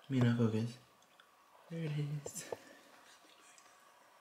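A man's voice: two short, quiet spoken phrases, the first right at the start and the second about a second and a half later.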